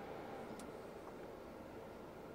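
Faint, steady road and engine noise inside the cabin of a moving Mercedes-Benz SL500, easing slightly, with one small tick about half a second in.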